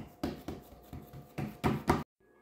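Hands pressing and patting cookie dough flat in a metal sheet pan: a few soft pats and scuffs, with the loudest ones close together near the end.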